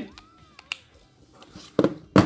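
A clear plastic Raspberry Pi case being pressed together by hand. A few faint clicks come first, then sharper plastic clicks near the end as the lid snaps into place.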